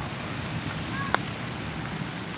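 A putter striking a golf ball once: a single sharp click about a second in, over steady wind noise on the microphone.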